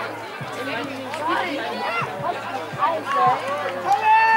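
Several overlapping voices calling out across a youth rugby pitch, many of them high-pitched young voices, with no single speaker clear.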